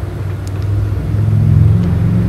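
A low mechanical rumbling hum that grows louder about a second in.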